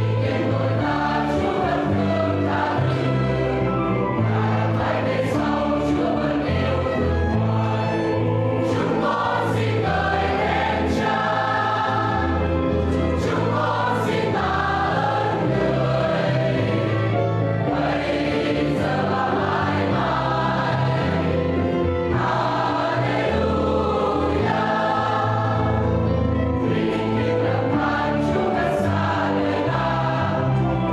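Church choir singing a hymn in harmony over a sustained instrumental bass line that moves every second or two: the closing hymn after the dismissal at the end of Mass.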